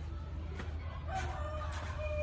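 A long drawn-out call holding one pitch with a slight fall, starting about a second in and carrying on past the end, over a steady low rumble.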